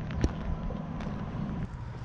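Wind buffeting the microphone as a low, uneven rumble, with one sharp click about a quarter second in.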